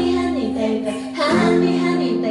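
A woman singing a held note to strummed ukulele accompaniment, breaking off about a second in and starting a new phrase shortly after.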